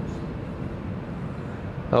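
Steady background noise, a low rumble with a hiss, in a pause in a man's speech; his voice starts again at the very end.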